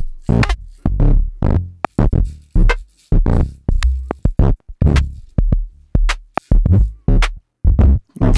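Teenage Engineering OP-1 synth drums (D-Box engine) playing an irregular run of electronic drum hits, mostly deep kick-like thumps with short decays, about two or three a second. A random LFO is modulating the drum engine, so the hits change from one to the next.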